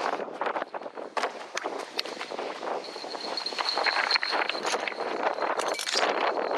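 Hurried footsteps crunching over gravel and shoreline stones, a quick irregular run of crunches. A thin, steady high-pitched tone comes in about halfway through and holds.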